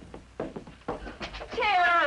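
A few sharp clicks, then a woman's high, drawn-out cry of delight that falls in pitch, starting about one and a half seconds in.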